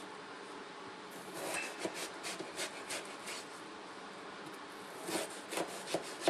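Kitchen knife slicing through a raw potato on a plastic cutting board: faint taps and scrapes of the blade, in two short runs with a pause between.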